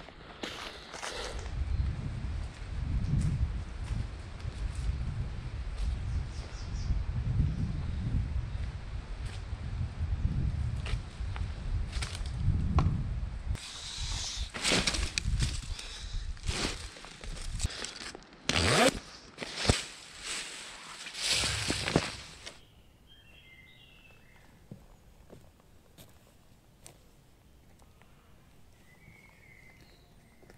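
Footsteps through dry leaf litter with gusty low wind rumble on the microphone, then a run of louder rustling from handling gear and fabric. About three-quarters of the way through it falls quiet, with a few faint high chirps.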